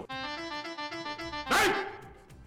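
A short comic music sting of quick notes stepping up and down, ending in a brief loud burst about one and a half seconds in.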